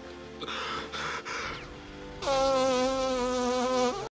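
A man blowing his nose hard into a handkerchief: a few breathy sniffs and sighs, then a long, loud, wavering honk lasting nearly two seconds, exaggerated as a comic sound effect.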